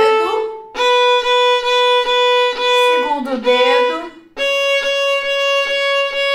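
Violin playing an ascending A major scale exercise in long bowed notes, each held note broken into repeated bow strokes. A note on the first finger (B) sounds first, then a step higher on the second finger (C sharp) about four and a half seconds in. A woman's voice is heard briefly in the gaps between notes.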